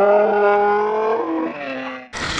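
A voice holding one long drawn-out note, as on a moaned 'my God', then stepping up to a short higher note near the end.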